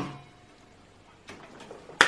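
A single sharp click right at the start, trailing off, as a bank of shop tools is plugged in and their combined surge trips the 15 A breaker at once. A faint short whine fades within the first second and the motors never get going; faint rustling follows near the end.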